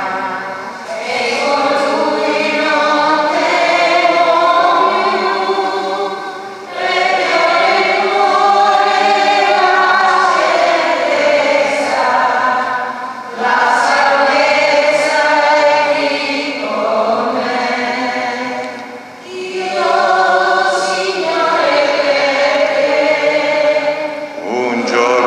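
Choir singing a hymn in long sung phrases of about six seconds, with short breaks between them. It is the entrance hymn of a Catholic Mass, sung as the priest comes to the altar.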